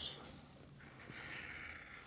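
A skiving knife shaving a thin layer off the end of a thick cowhide belt strip to cut it down to about half its thickness: a faint, soft scraping that starts a little under a second in.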